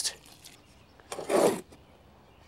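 A spade scooping and scraping through a peat moss, Portland cement and sand mix in a wheelbarrow: one short rush of scraping about a second in.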